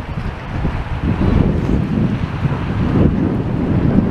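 Strong wind buffeting the camera's microphone: a loud, gusty low rumble that builds about a second in.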